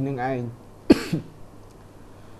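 A single short, sharp cough about a second in, after a phrase of speech ends.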